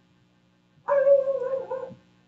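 A pet's single high, drawn-out cry, about a second long, starting about a second in and falling slightly at the end.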